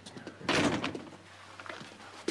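Apartment front door being shut, with one thud about half a second in and a few small clicks after.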